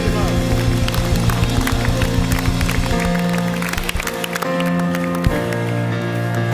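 Live worship band music: sustained keyboard chords with a steady beat that drops out about three to four seconds in, leaving the held chords.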